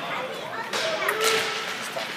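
Ice hockey skates and sticks scraping on rink ice around a faceoff, with a sharp swishing scrape about a second in. Voices call out around it.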